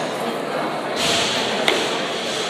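Barbell jerk: about a second in, a sudden burst of noise with a low thud as the loaded barbell is driven overhead, then a single sharp click, all over the chatter of onlookers in a large hall.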